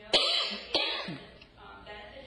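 A person coughing twice, loud, the two coughs about half a second apart within the first second.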